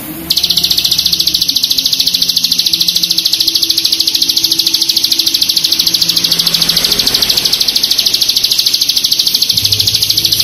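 Ciblek gunung (a prinia) singing its long 'bren': one unbroken, very fast, tightly pulsed buzzing trill that begins just after the start and runs on without a pause. Soft background music sits underneath.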